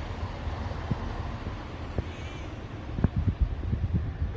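Low rumbling noise on a handheld phone's microphone, with several knocks from the phone being moved near the end. A faint, short high call sounds about two seconds in.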